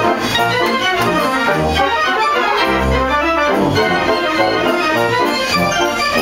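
Pipe organ playing a piece: sustained full chords over a moving bass line, heard close among its pipes.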